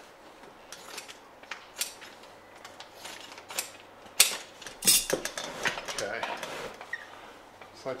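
Scissors cutting upholstery fabric from a roll: a run of irregular sharp snips, with the fabric rustling as it is handled.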